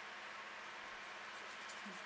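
Faint, steady background hiss of room tone, with no distinct sound standing out.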